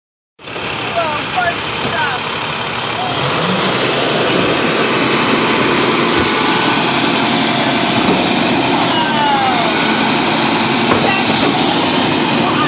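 Garbage truck's diesel engine running close by, getting louder over the first few seconds and then holding steady.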